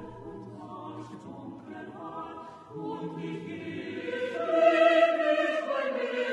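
Station-break music with sustained, choir-like sung voices, swelling louder about four seconds in.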